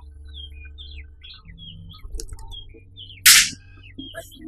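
Birds chirping in short rising and falling calls, then about three seconds in a single loud gunshot, a sharp crack lasting a split second, fired upward at the birds.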